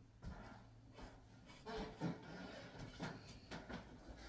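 Faint, irregular scratchy strokes of a flat paintbrush dabbing and dragging black paint along the edges of the cut-outs in a painted wooden box, with a few soft taps.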